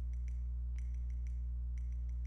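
Steady low electrical hum with a few faint soft clicks of a pointed tool pressing a small paper bow onto a paper bag.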